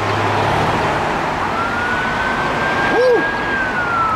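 Emergency vehicle siren wailing over road traffic noise. Its tone rises about a second and a half in, holds steady, then starts a slow fall near the end.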